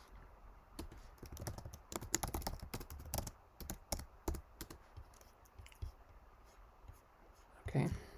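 Quiet, irregular keystrokes of typing on a computer keyboard, a file name being typed.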